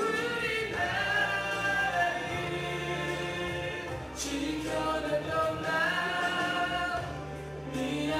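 A group of male voices singing together in harmony over accompanying music with a steady bass line, in phrases.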